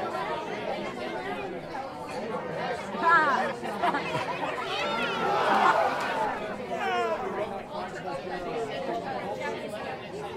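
A crowd of children chattering and calling out together, with louder excited shouts now and then.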